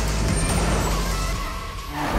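Sound effect of a heavy vehicle driving past: a low engine rumble under a hiss, easing off towards the end.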